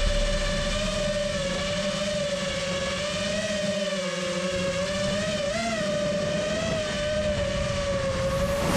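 FPV quadcopter's brushless motors whining at a steady pitch, the tone wavering slightly as the throttle shifts, with a brief rise about five and a half seconds in.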